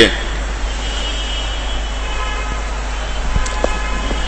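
Pause in a recorded talk: the recording's steady low electrical hum and hiss, with faint, high, sustained tones coming in about a second in and lasting to the end, and two small ticks near the end.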